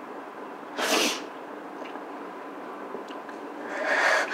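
A woman crying: a sharp, sniffling breath about a second in, then another sobbing breath starting near the end.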